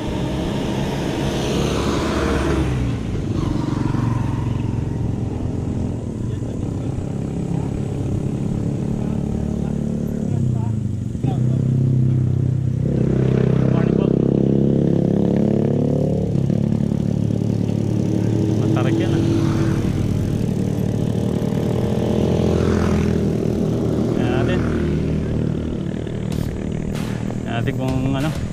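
A motorcycle engine running close by, loudest and rising in pitch from about eleven to sixteen seconds in.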